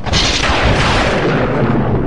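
Thunder sound effect: a sudden loud crack that settles into a steady low rumble.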